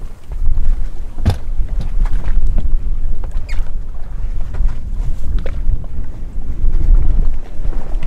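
Strong wind buffeting the microphone on a boat in choppy open water, with waves washing against the hull and a few sharp knocks, the loudest about a second in.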